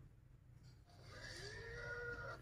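Near silence, then from about a second in a faint, drawn-out tone that rises in pitch and then holds: anime episode audio playing quietly in the background.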